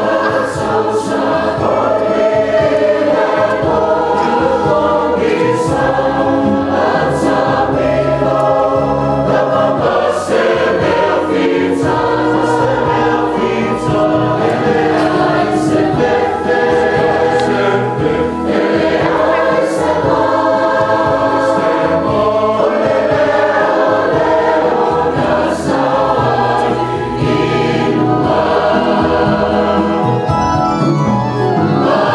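Church choir of men and women singing a hymn together in harmony, held notes moving steadily from chord to chord.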